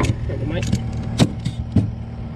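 A steel ratchet-strap buckle being worked by hand, giving three sharp metallic clicks: one at the start, then two close together in the second half. A steady low engine idle runs underneath.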